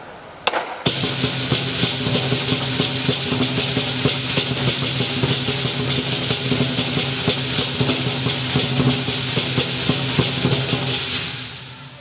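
Lion dance percussion: a big drum beaten in a fast, dense rhythm with clashing cymbals and a ringing gong. It starts with a couple of strikes about half a second in and fades out near the end.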